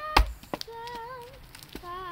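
An axe chopping once into a round of firewood held together by a strap, a single sharp, heavy strike just after the start, followed by a lighter knock half a second later. A child sings throughout.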